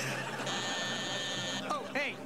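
Doorbell buzzer sounding one steady, high note for about a second, over studio audience laughter.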